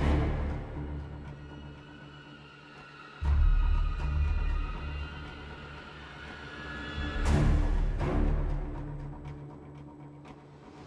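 Dark, stealthy orchestral cue made entirely from Symphobia string samples: held string tones and swells, with deep low hits that come in suddenly about three seconds in and again about seven seconds in.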